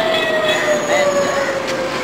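A long, steady high tone that slowly falls in pitch, like a siren winding down, over the murmur of a crowd's voices.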